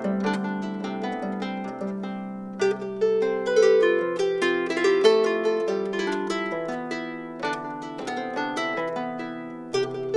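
Medieval gut-strung harp with 23 gut strings, plucked by hand in a medieval estampie: a melody of ringing plucked notes over lower sustained notes. The playing grows louder and busier in the upper notes about two and a half seconds in.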